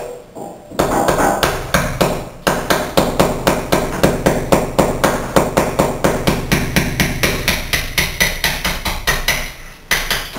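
Ball peen hammer tapping a cold chisel in quick, even strokes, about five a second, chipping out the old mortar and broken glass left in a glass-block opening. The tapping starts about a second in and stops just before the end.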